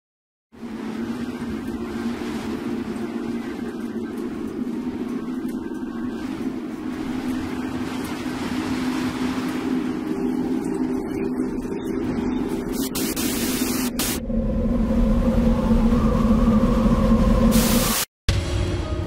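Edited soundtrack of sustained low droning tones under a slowly swelling wash of noise. It grows louder, with two sharp hissing swells near the end, and cuts off abruptly.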